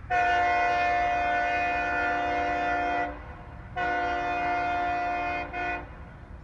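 Horn of CSX SD23T4 diesel locomotive No. 1713, a multi-chime air horn sounding a long blast of about three seconds, then after a short pause a blast of about a second and a half, and a brief toot right after.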